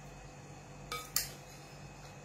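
A metal spoon clinking twice against a dish about a second in, the two clinks about a third of a second apart with a short ring, over a faint steady hum.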